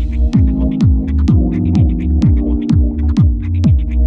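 House-style electronic dance music from a DJ mix: a steady four-on-the-floor kick drum, each kick falling in pitch, about two a second, under a held low bass line and crisp hi-hat ticks.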